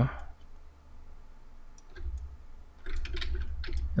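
A few faint computer mouse clicks over low microphone rumble, with a soft breath or murmur from the narrator near the end.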